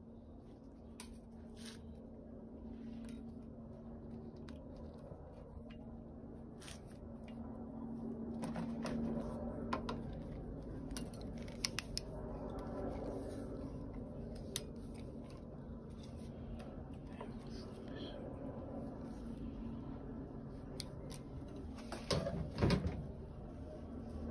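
Scattered light clicks and snips of thin wire being threaded, twisted with pliers and trimmed to lock down the oil pump sprocket nut, with a louder cluster of clicks near the end. A faint steady hum runs underneath.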